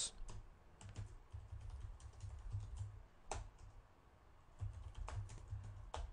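Faint computer keyboard typing: a few irregular, scattered keystroke clicks.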